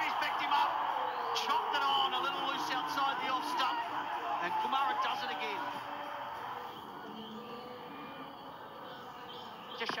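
Many voices cheering and shouting at once as a wicket falls, the batsman bowled; loud at first, then dying away over about six seconds.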